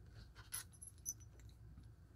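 Near silence: room tone, with two faint light clicks about half a second and a second in.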